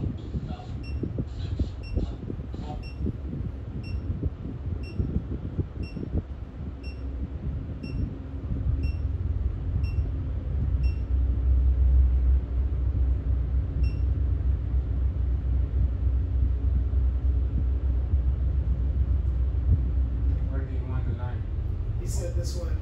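Tugboat's diesel engines rumbling, heard inside the wheelhouse, growing louder and heavier about ten seconds in and then holding steady. A faint regular tick, about two a second, runs through the first part and stops around fourteen seconds in.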